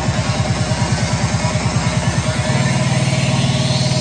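Psytrance played loud over a festival sound system: a fast rolling bassline that, about two and a half seconds in, turns into a held bass note under a rising sweep, with the music cutting off right at the end.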